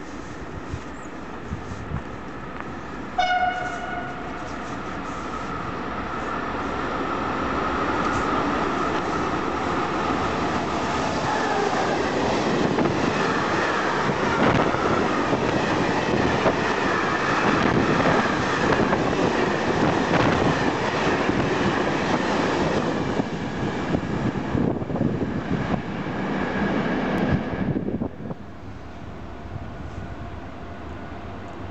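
A train horn sounds one short blast about three seconds in. A freight train of hopper wagons then approaches and passes at speed, its wheels rumbling and clattering on the rails. The noise builds steadily, stays loud for many seconds, then stops abruptly near the end.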